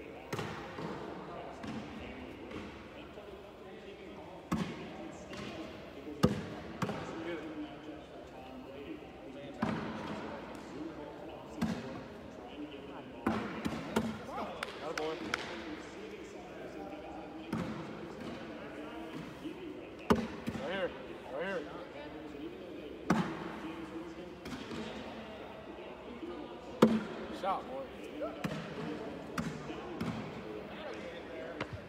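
Cornhole bags landing on wooden boards, one thud every few seconds at irregular intervals, over a steady murmur of voices in a large hall.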